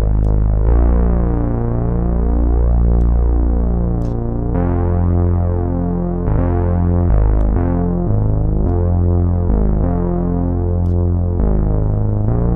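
Imaginando DRC software synthesizer playing a low monophonic bass line: sawtooth oscillators detuned against each other with a sub-oscillator, thickened by chorus, reverb and slight saturation. The notes are held for between about half a second and several seconds each, shifting pitch at irregular points.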